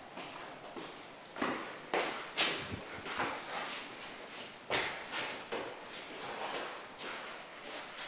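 Footsteps on a hard floor, roughly two a second in irregular runs, with the odd knock.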